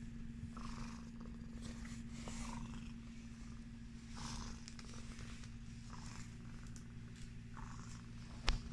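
Sphynx cat purring steadily close up while it is stroked, a low continuous rumble with soft swells every second or two.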